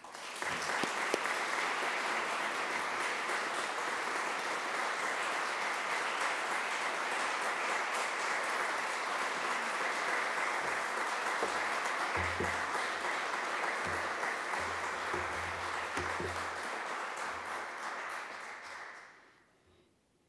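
Audience applauding steadily, then dying away near the end.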